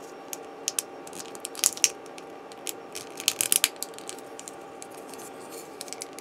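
Small plastic model-kit parts clicking and tapping as they are handled and pressed together, in scattered quick clicks with two short clusters, over a faint steady hum.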